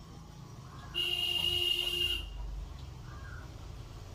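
A high, buzzer-like tone with a hiss sounds once for just over a second, starting about a second in.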